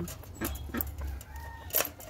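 Caged quails calling with short, repeated 'chook chook' notes, a sharper, louder one near the end.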